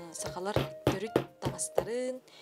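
A hand hammer tapping on a fur hat on a workbench: about five quick, sharp strikes, roughly three a second.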